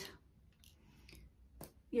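Faint small scratches and clicks of makeup items being handled, with one sharper click about one and a half seconds in.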